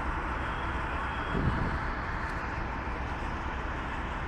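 A vehicle engine running steadily, a low rumble under a constant wash of noise, with a brief louder low swell about a second and a half in.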